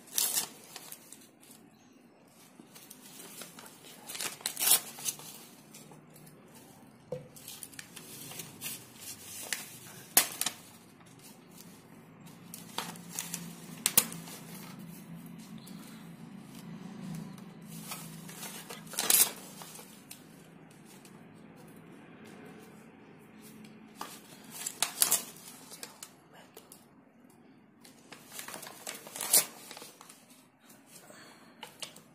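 Paper rustling and crinkling in short, irregular bursts as small pieces of coloured paper and newspaper are handled and pressed onto a glued drawing sheet.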